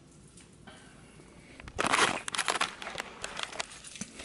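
Quiet at first, then a burst of rustling and crackling about two seconds in that lasts under two seconds, like something being handled close to the microphone.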